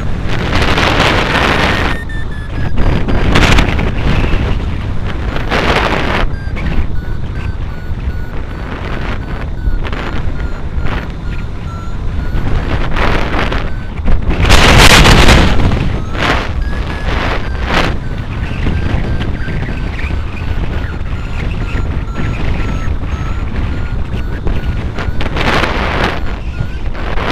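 Wind rushing over the microphone of a hang glider in flight, surging in loud gusts, the strongest about halfway through. Under it a hang-gliding variometer beeps steadily, its pitch drifting up and down as the glider's climb rate changes.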